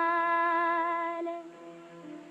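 A woman singing one long held note with a slight vibrato, a song from a 1930s Indian film soundtrack; the note ends about a second and a half in.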